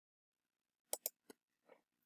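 Near silence with a few short, faint clicks close together about a second in, and one fainter one near the end.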